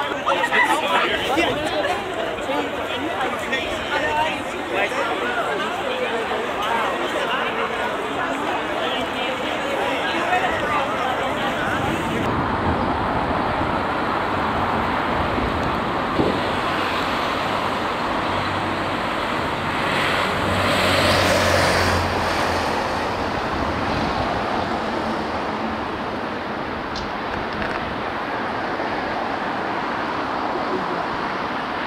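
Road traffic passing along a city avenue, with onlookers chattering through the first part. About two-thirds of the way in, a motor vehicle passes close and its engine is briefly the loudest sound.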